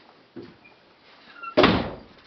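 A wooden interior door is opened. A soft knock comes about half a second in, then a loud, sudden thump near the end as the door swings open.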